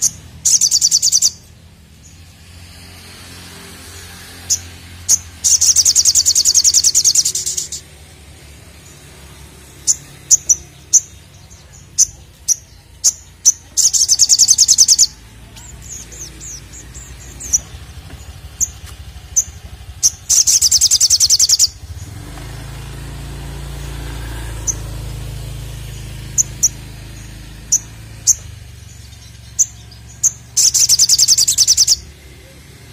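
Olive-backed sunbird (sogok ontong) singing: sharp high chips, single and in quick runs, broken by four loud rapid high trills lasting one to two seconds each.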